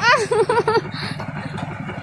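A small engine idling steadily, a low even hum. A voice sounds briefly over it in the first second.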